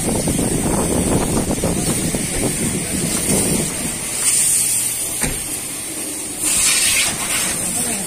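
Men talking over the sounds of a hand car wash in progress, with a short hiss about six and a half seconds in.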